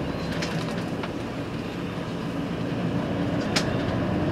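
Steady engine hum and road noise heard inside a moving bus, with a faint click about three and a half seconds in.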